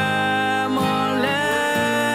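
Live acoustic gospel band playing: acoustic guitar strumming and keyboard under long held melodic notes from an electric violin and a male singer.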